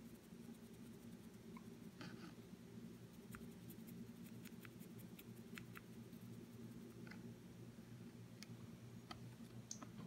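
Faint, scattered scratchy ticks of a dry brush flicking over the raised details of a plastic miniature, over a low steady room hum.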